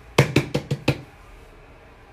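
Five quick, sharp knocks in a row, about six a second, all within the first second.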